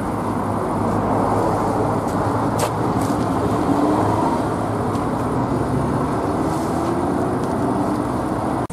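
Heavy dump truck's diesel engine running steadily close by, with a faint tone that rises slowly over the last few seconds.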